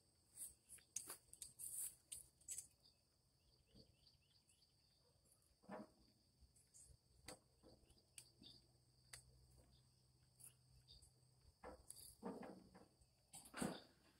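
Near silence with faint, scattered short clicks and taps of metal tongs against a gas grill's grate as whole eggplants are turned over. A faint, steady, high-pitched insect chirr runs underneath.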